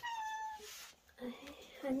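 A cat meowing: one drawn-out, high cry of about half a second at the start, the cat crying for attention after being left alone.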